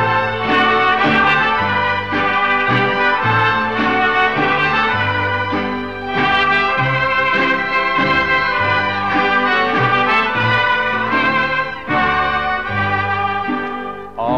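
Mariachi band instrumental interlude between sung verses, with no singing: trumpets carry the melody over a bass line that steps from note to note.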